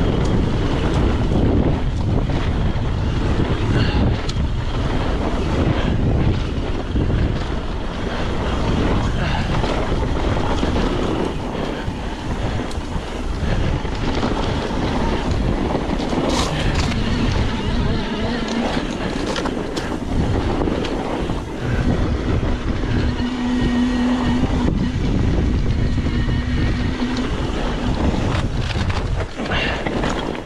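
Wind buffeting the camera microphone and mountain-bike tyres rumbling over a dirt trail on a fast descent, with knocks and rattles from the bike over rough ground. A steady humming tone comes in for a few seconds in the second half.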